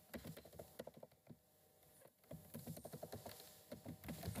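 Faint computer keyboard typing: a quick run of keystrokes, a lull of about a second, then a second run of keystrokes.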